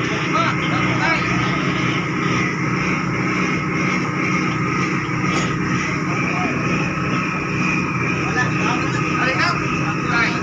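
The OceanJet 5 fast ferry's diesel engines running at the berth, a steady drone at an even level, while the ship gives off heavy dark exhaust smoke.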